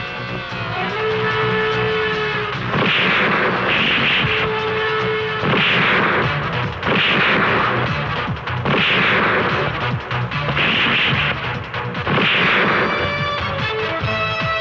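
Dubbed punch sound effects in a film fist fight: heavy hits, about one a second, over a background music score with held notes. The music grows more prominent near the end.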